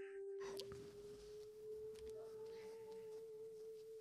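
A faint, single held tone from the film's soundtrack, pure like a tuning fork, drifting very slightly upward in pitch throughout, with a weaker higher overtone joining briefly in the middle.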